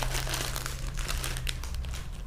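Crinkling rustle of packed suit pieces and their wrapping being handled and shifted on a counter, a dense run of small quick crackles.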